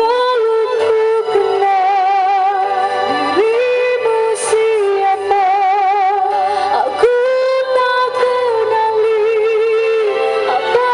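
A woman singing live into a microphone through stage speakers, with musical accompaniment, holding long notes with a wide vibrato and moving to new notes about three and seven seconds in.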